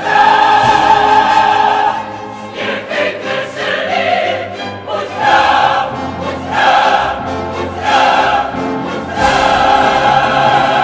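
Several operatic voices singing together over an orchestra, in loud sustained phrases that swell and fall back several times.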